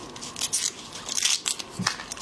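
Shell of a soy-sauce-marinated shrimp being peeled apart by gloved fingers: a run of short, crisp cracks and snaps in two quick clusters.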